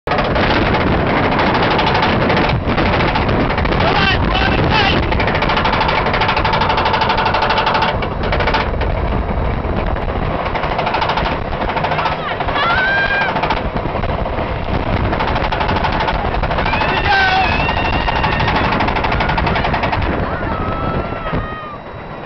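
Roller coaster lift hill: the chain lift and anti-rollback ratchet clattering rapidly and steadily as the train climbs, with riders' voices over it. The clatter thins out near the end as the train reaches the crest.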